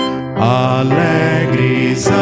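Hymn singing in Portuguese, led by a man's voice over violin, acoustic guitar and keyboard accompaniment. The instrumental introduction gives way to the first sung line about half a second in.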